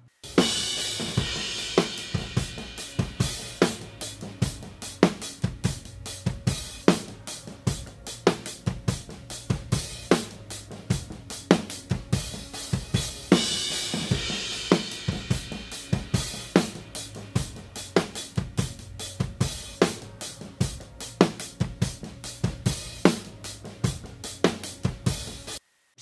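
A live drum-kit recording played back through only its snare-top close mic and overhead mics: a steady groove of snare hits under cymbals and hi-hat. The passage plays twice. On the second pass, from about halfway, the snare top and one overhead are delayed by a few samples so that they line up in time with the other overhead.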